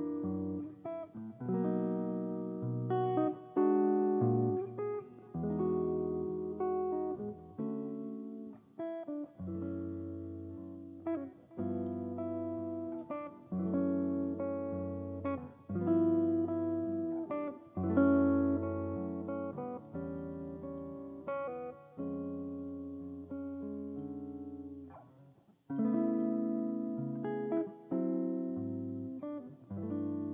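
Hollow-body archtop electric guitar, amplified, playing a jazz tune solo: low bass notes held under chords and melody as the player accompanies himself. A brief break in the playing about five seconds before the end.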